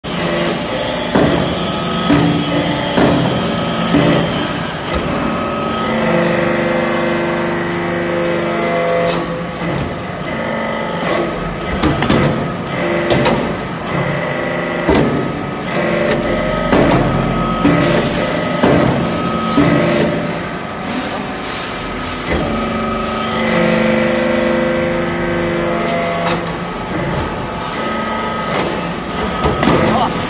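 TCM vertical hydraulic metal-chip briquetting press running through its pressing cycle: the hydraulic unit runs with steady tones under frequent metallic knocks and clanks from the ram and mould. A similar stretch of steady tones comes back about 17 seconds later, as the cycle repeats.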